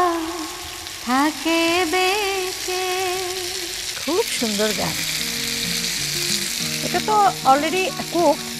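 Marinated pieces with sliced onion and dried red chillies frying in oil in a non-stick pan, sizzling steadily. A melody of long wavering notes sounds over it in the first half, and stepped held notes of music follow from about halfway.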